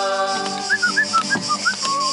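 A person whistling a quick run of about eight short, curling notes over a steady musical accompaniment, following a held sung note at the start.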